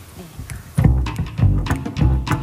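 A jazz band comes in about a second in, led by a plucked electric upright bass with drums, after a quiet lead-in with a few sharp evenly spaced clicks keeping time.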